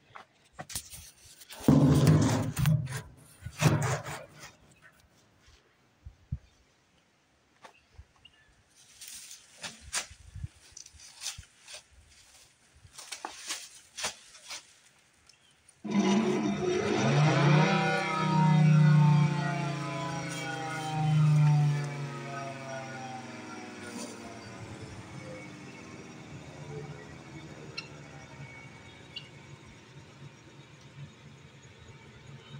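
Scattered knocks and handling clicks, then about halfway through an electromechanical rotating horn siren comes on suddenly and wails loudly for several seconds. Its pitch then falls steadily as it winds down.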